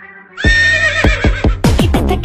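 A horse's whinny laid over music: after a brief dip in level, a high held whinny comes in about half a second in, together with a thumping beat.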